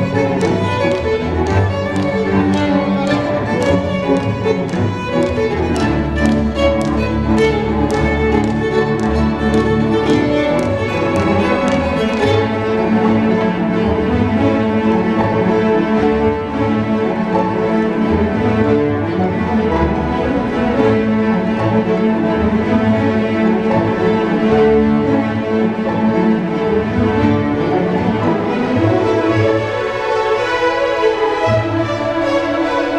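A solo violin plays with a student string orchestra of violins, cellos and basses. For about the first twelve seconds the strings play short, sharp repeated strokes, then they move into smoother held notes.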